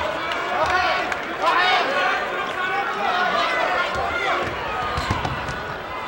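Basketball arena crowd noise, with voices calling out over the play and players running on the hardwood court.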